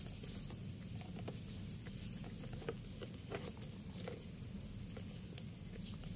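A few faint, scattered clicks and taps from a kitten's paws and claws on a plastic toy, over a steady low outdoor background and a thin high steady hiss.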